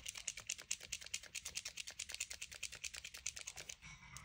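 Acrylic paint marker being primed for use: a rapid, even run of small plastic clicks, about ten a second, stopping just before the end.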